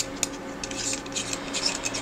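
Handling noise from a screw-on fisheye lens adapter and its threaded ring adapters being turned in the hands: a run of small clicks and scratchy rubbing.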